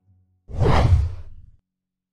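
A whoosh transition sound effect: one swell of rushing noise over a low rumble, starting abruptly about half a second in and fading out over about a second.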